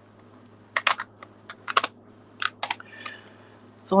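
A quick string of light, sharp clicks and taps from small crafting tools and die-cut paper pieces being handled and set down on a craft mat, heard mostly in the middle seconds.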